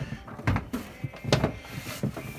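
Two knocks about a second apart, from a heavy power cord and its plug being handled at a wall-mounted dryer outlet.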